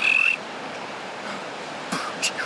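A short, high whistle lasting about a third of a second, followed by steady wind noise.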